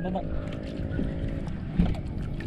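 Steady low hum of a boat engine, one even drone.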